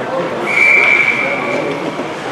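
Ice hockey referee's whistle, one steady high blast lasting about a second and a half, starting half a second in and signalling a stop in play, over the murmur of spectators.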